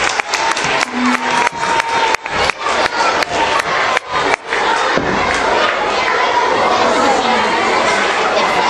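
A gym hall full of schoolchildren cheering and shouting, with a burst of sharp claps over the first four seconds or so, then settling into loud, many-voiced chatter.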